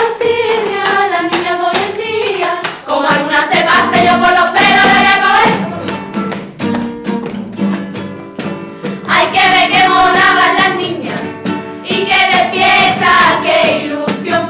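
A group of young women singing a carnival song together in chorus, phrase after phrase, over a steady rhythmic beat.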